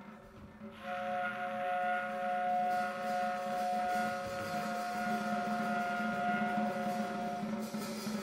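Tenor saxophone and drum kit playing together: about a second in, the saxophone holds one long steady note for some six seconds over quiet drumming, with a cymbal wash coming in a couple of seconds later.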